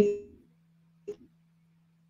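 Choppy live-call audio dropping out: a woman's voice trails off, one short clipped fragment comes through about a second in, then near silence with only a faint steady hum.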